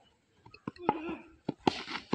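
Faint voices of players and onlookers, with a few short sharp clicks and knocks.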